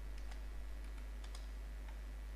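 Light typing on a computer keyboard: faint, irregular key clicks over a steady low hum.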